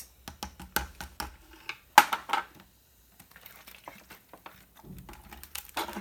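Light clicks and knocks of a small cup being handled against a glass bottle and a plastic tray while lime juice is poured into the bottle, with one louder knock about two seconds in.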